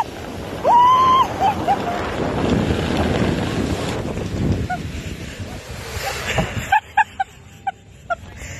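A woman's high cry as she starts down a slide, then a rush of wind buffeting the phone's microphone during the fast descent, ending in short bursts of laughter at the bottom.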